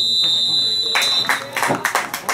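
Referee's whistle blown in one long blast of just over a second, the last of a three-blast pattern (two short, one long) that signals full time. Clapping and voices follow.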